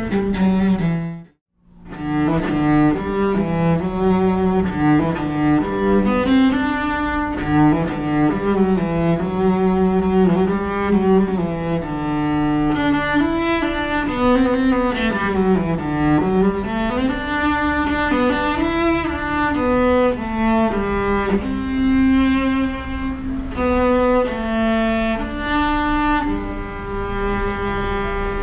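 Solo cello played with the bow: a melody of held notes stepping up and down. The sound cuts out briefly about a second and a half in.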